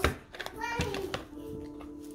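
Background music and a child's voice in a small room, at moderate level, with one sharp click right at the start from handling a crayon box against a plastic pencil box.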